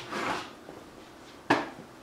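A short rushing noise, then about one and a half seconds in a single sharp knock of a wooden interior bedroom door being banged as it is pushed open or shut.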